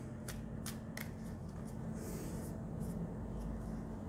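A deck of tarot cards being shuffled and handled by hand: a few light flicks of cards in the first second or so, then a soft rustle of cards.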